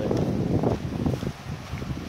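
Wind buffeting the microphone in uneven gusts, heaviest in the low end, easing briefly about a second and a half in.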